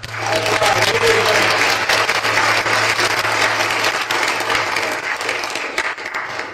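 Congregation applauding, dense clapping that starts at once and tails off near the end, with a low steady tone underneath that stops about four seconds in.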